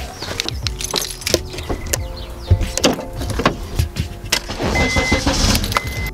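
Car keys jangling and clicking as they are handled and fitted into the ignition, with a short high electronic beep twice near the end.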